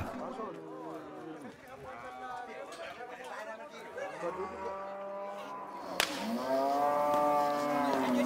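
A herd of cattle mooing, many long calls overlapping, while the herd is being rounded up for sorting. The calls grow louder near the end.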